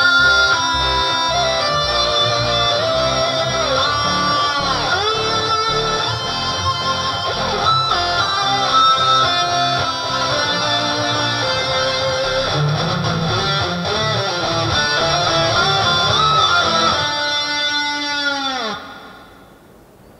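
Electric guitar playing a melodic lead of an anime theme, with string bends and vibrato. Near the end it holds a note that falls in pitch and dies away.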